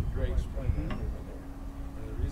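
Indistinct voices of people talking, with a low rumble of wind on the microphone. A faint steady hum comes in about halfway through.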